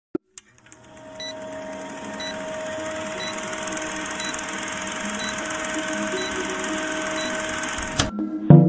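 Film countdown-leader sound effect: a film projector running with a fast steady clatter and hiss, and a short high beep once a second, seven times. It fades in over the first second.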